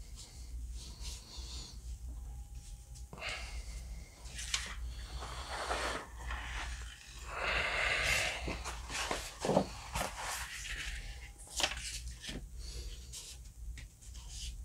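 Hands smoothing a large sheet of paper pressed onto a glued print, then the sheets lifted and turned over with loud paper rustling about eight seconds in. A few sharp taps and handling noises follow.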